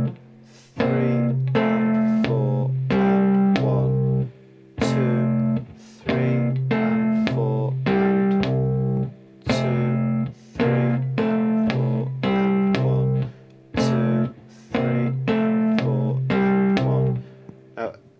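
Three-string cigar box guitar in open G tuning played fingerstyle: a one-bar blues riff of thumb bass notes and finger pulls, looped several times in an even rhythm with brief gaps between repeats.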